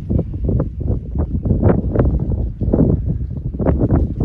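Gusty wind buffeting the phone's microphone: loud, uneven low rumbles that come in quick, irregular gusts.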